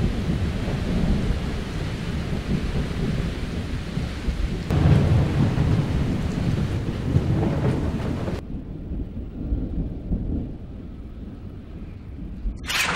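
Thunderstorm: rolling thunder rumbles under a steady hiss of rain, with a fresh swell of thunder about five seconds in. The rain hiss cuts off suddenly about eight seconds in, leaving a quieter rumble of thunder.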